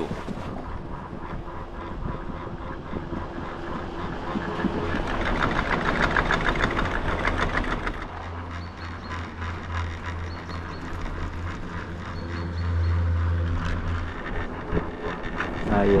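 Chairlift ride heard from the chair: steady wind and running noise from the lift. About five to seven seconds in there is a rapid rattling clatter, and a low hum follows through the middle.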